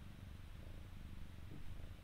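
Faint, steady low rumble with a fine flutter, the background bed heard in a pause between spoken words.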